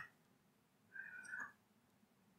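Near silence: room tone, with one brief, faint high-pitched squeak-like tone about a second in.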